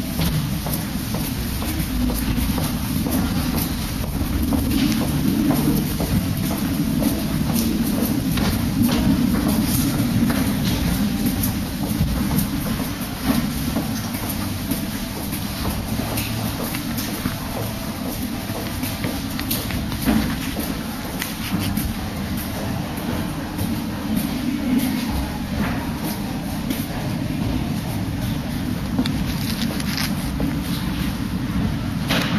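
Footsteps in an underground pedestrian passage over a steady low rumble.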